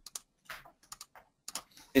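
Typing on a computer keyboard: a run of short, irregularly spaced key taps.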